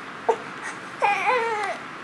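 A baby fussing: a short cry about a third of a second in, then a longer wavering cry about a second in.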